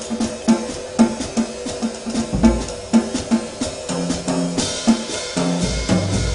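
Jazz trio with the drum kit to the fore: a steady beat of about two strokes a second with snare and rimshot hits and bass drum kicks. Low pitched notes join about four seconds in.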